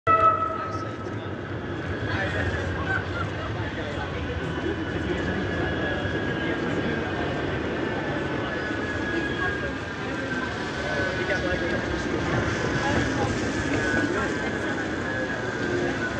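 Manchester Metrolink tram (Bombardier M5000) approaching along a wet street-running track: a steady rolling rumble, with a thin whine that slowly drops in pitch over the second half.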